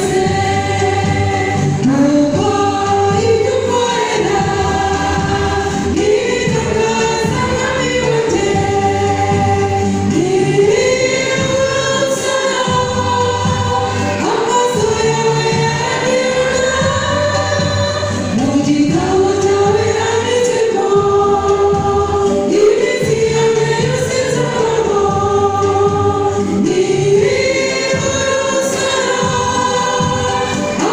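A mixed church choir singing a Kinyarwanda gospel song, with long held notes that glide up into each phrase.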